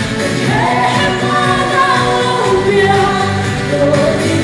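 A woman singing solo into a microphone with amplified musical accompaniment, holding long, gently wavering notes.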